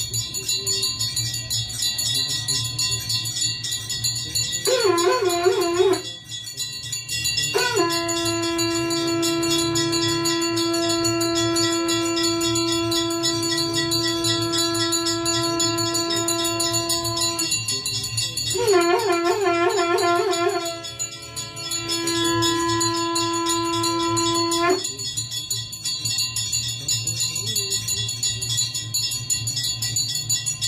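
A conch shell (shankh) is blown in two long blasts during aarti. Each blast opens with a wavering, warbling note and settles on one steady tone; the first is held about ten seconds, the second about six. Temple bells ring rapidly and without a break throughout.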